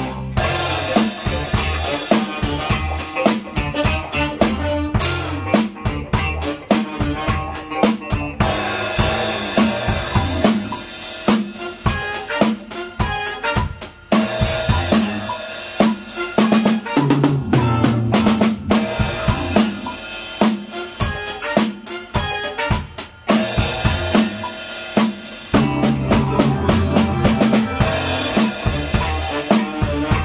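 Acoustic drum kit played in a steady groove on snare, bass drum, hi-hat and cymbals, over a band backing track with a moving bass line. The pattern changes at several section breaks through the piece.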